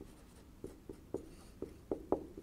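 Marker pen writing on a whiteboard: about five short, faint strokes in quick succession as letters are written.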